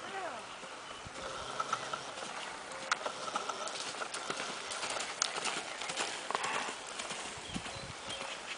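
Horse's hooves striking dry dirt as it lopes under a rider: an irregular run of dull hoofbeats.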